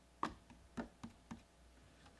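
Four faint, sharp clicks, irregularly spaced over about a second.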